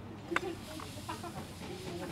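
Outdoor background sound with scattered short calls or distant voice fragments over a steady hum, and one sharp click about a third of a second in.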